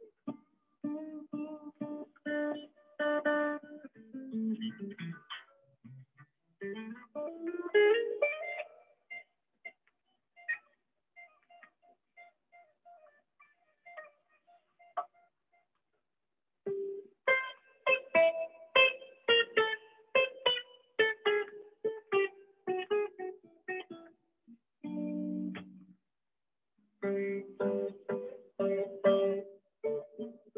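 Electric guitar played solo: phrases of quickly picked single notes with pauses between them, a sliding run upward about eight seconds in, soft sparse notes in the middle, and a brief low chord near twenty-five seconds. It is heard through a video call, with the top end cut off.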